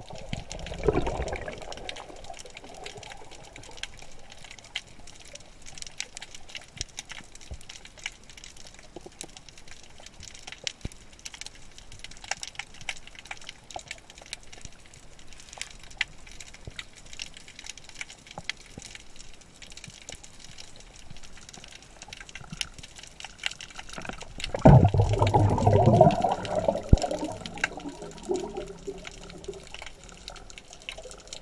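Underwater ambience heard through a submerged camera: a steady faint crackle of many small clicks. About 25 seconds in, a loud burst of bubbling, rushing water lasts about two seconds, then dies down.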